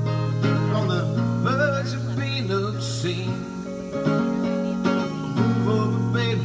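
Solo electric guitar played live, strummed chords ringing on; the low part of the chord drops out for about two seconds in the middle and comes back near the end.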